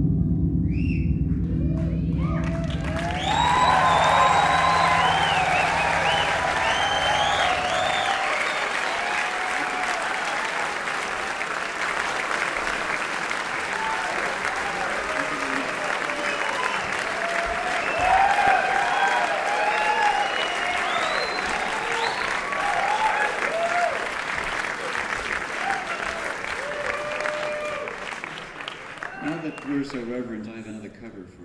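A grand piano's last low notes ring on and die away while the audience breaks into applause about two seconds in, with cheering and whistles. The applause tapers off near the end.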